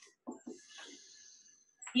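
Dry-erase marker writing on a whiteboard: a faint, high, squeaky scratch lasting about a second.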